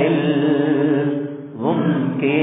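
Church members singing a Tamil Christian hymn together. About one and a half seconds in, a sung phrase ends with a short dip, and the voices glide upward into the next line.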